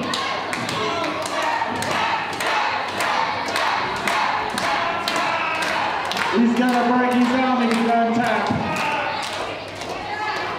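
Wrestling crowd in a hall shouting and calling out over a run of sharp thuds. Near the end one voice holds a long call for about two seconds.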